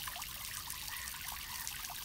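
Small garden fountain's jet falling back into its pool, a steady light splashing of water.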